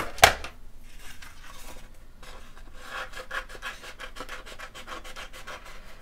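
A small plastic ink pad knocks down on the table about a quarter second in. Then scissors cut into painted cardstock with a quick run of small snips and paper rustles.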